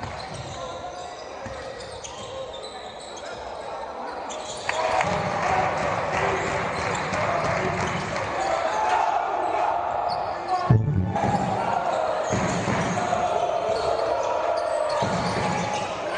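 Crowd noise and voices in an indoor basketball arena, with a basketball being bounced on the hardwood court. The crowd gets louder abruptly about five seconds in and changes again about eleven seconds in.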